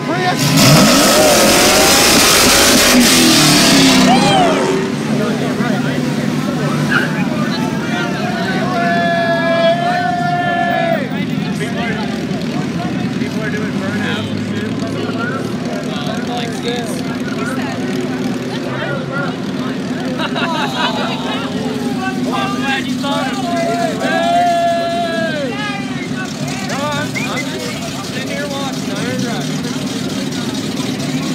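A car engine revving hard and accelerating, loud for about the first four seconds with a rising pitch, then several vehicle engines running steadily at low speed, with voices shouting over them.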